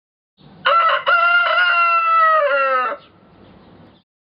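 A rooster crowing once, a single cock-a-doodle-doo of about two seconds with a short break after the first note and a falling pitch at the end.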